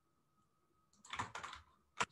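A short run of computer keyboard keystrokes, clicking about a second in.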